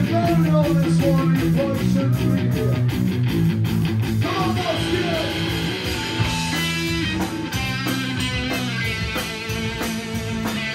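Live punk rock band playing: electric guitar chords over bass and a steady fast drum beat, the song under way.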